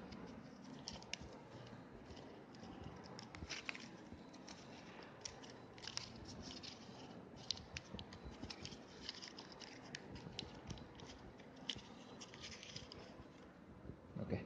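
Thin foil wrapper of a Hershey's Nugget chocolate being peeled open by hand, giving a faint, irregular run of small crinkles and crackles.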